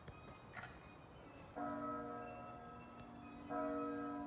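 A bell-like clock chime struck twice, about two seconds apart, each stroke ringing on and slowly fading, with the second stroke the louder.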